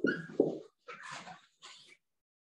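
Whiteboard marker writing on a whiteboard: a few quick squeaky strokes, then about a second of softer scratching strokes.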